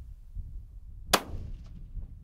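A single hunting rifle shot about a second in: one sharp crack with a short ringing tail. Under it runs a steady low rumble of wind on the microphone.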